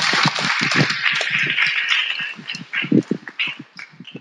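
Audience applauding, dying away in the last second.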